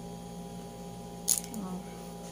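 A single sharp plastic click about two-thirds of the way through as the lip tint tube is handled, over a steady electrical hum, followed by a brief murmur of voice.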